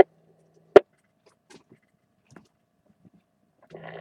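Amateur FM radio receiver between transmissions. A single sharp click comes about three-quarters of a second in as the squelch closes behind the previous station, followed by a few faint ticks and near silence. Just before the end the next station's carrier opens with a low steady hum.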